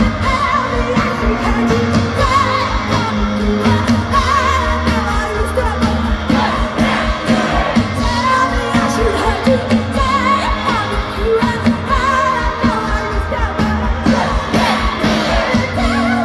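Live pop band playing through a festival PA: a woman singing lead over drums, electric guitar and keyboards, heard from within the crowd.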